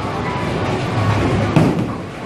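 A bowling ball thuds onto the lane about one and a half seconds in and rolls away, over the steady background noise of a bowling alley.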